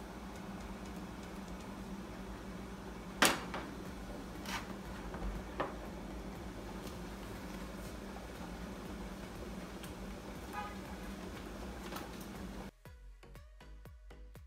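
Steady low room hum with a few sharp knocks as a wooden spoon and ingredients go into a large metal stockpot, the loudest knock about three seconds in. Near the end, background music with a beat takes over.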